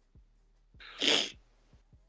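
A single short, sharp burst of breath from a person, about a second in, breathy with little voice in it.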